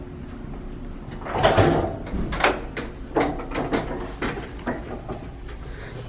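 A door being opened about a second and a half in, then a run of footsteps, about three a second.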